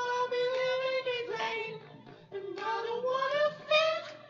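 A man singing unaccompanied in a high voice, holding long drawn-out notes without clear words: a steady held note, then a slow rising note, then a short higher note near the end.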